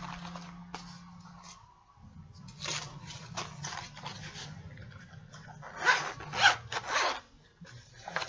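Zipper of a padded tablet sleeve case being pulled open in short rasping strokes, a few about three seconds in and a louder run near the end, over a low steady hum.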